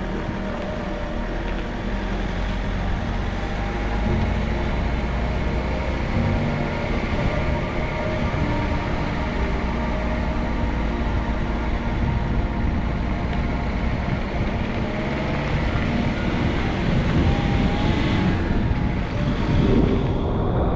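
Wind buffeting the microphone and road and engine noise from a Mercedes van driving along, picked up from a camera held outside the driver's window; a steady, loud rush.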